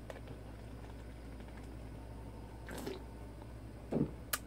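Faint gulping of beer drunk straight from an aluminium can, over a low steady hum, with one slightly louder gulp about three seconds in.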